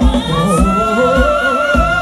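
Live band music with singing over a steady drum beat of about two beats a second; a long high note is held from about half a second in until near the end.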